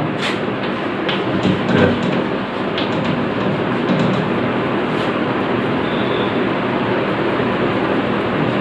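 Steady, fairly loud rushing background noise throughout, with a few short taps of chalk on a blackboard in the first three seconds as writing is done.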